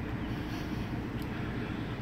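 Steady low rumble of distant vehicle engines.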